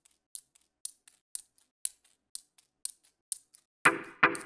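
Sharp, high clicks from a glucometer kit used as a percussion beat, about four a second with every other click louder. Near the end the full, louder beat of the track comes in.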